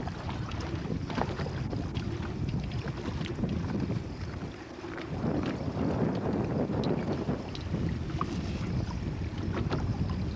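Wind buffeting the microphone on an open boat, a rough low rumble that eases briefly about halfway through, with a few faint clicks of handled fishing gear.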